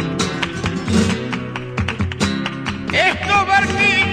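Flamenco guitar playing strummed chords and runs; about three seconds in, a flamenco singer's voice comes in over it with long, bending held notes.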